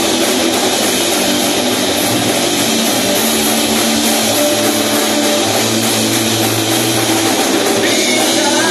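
Live rock band playing loudly and steadily: electric guitars and a drum kit, with no singing.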